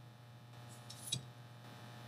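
A single short click of small plastic blower-fan parts, the impeller and its housing, knocking together as they are handled, about halfway through, with a faint rustle just before it. A low steady hum runs underneath.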